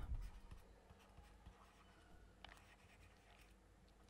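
Near silence with faint scratches and ticks of a stylus on a tablet screen as a word is handwritten.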